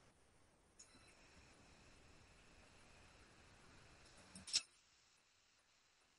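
Near silence: faint hiss of a video-call audio line, with one brief click-like noise about four and a half seconds in.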